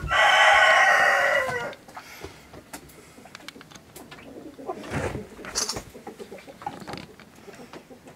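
A rooster crowing once, loudly: one long call that drops in pitch as it ends. A few softer, brief bird calls and rustles follow.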